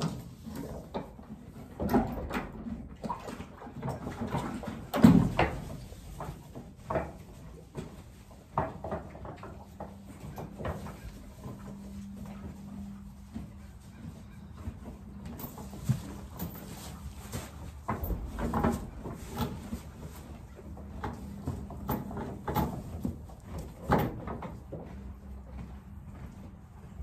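Yearling Percheron horses shifting about in a wooden stall while being handled: scattered knocks and thumps of hooves and bodies against the boards, with rustling, the loudest thump about five seconds in.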